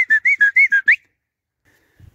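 A person whistling a quick run of short, clear notes, about seven a second, that stops about a second in.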